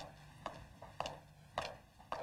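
Regular sharp knocks, about two a second, over a faint low hum.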